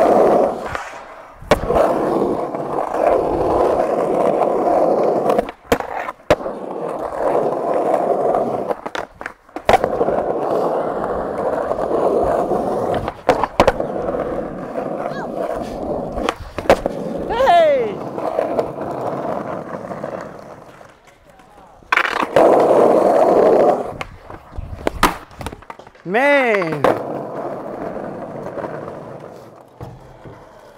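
Skateboard wheels rolling over concrete in long runs, broken by sharp clacks of tail pops and board landings. Twice a short falling pitched squeal cuts through, once around the middle and once near the end.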